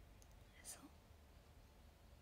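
Near silence: faint room tone, with one soft, breathy spoken syllable from a woman about a third of the way in.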